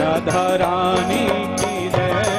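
Instrumental interlude of Indian devotional bhajan music: a harmonium holds sustained notes under a wavering melody line, with a steady percussion beat.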